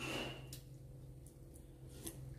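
Quiet eating sounds at a table of noodle soup: a brief noisy sound at the start and a light click of a spoon or chopsticks about half a second in, over a faint steady low hum.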